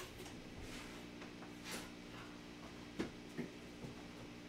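Quiet kitchen with a steady low hum and a few faint knocks about three seconds in and near the end, as items are handled.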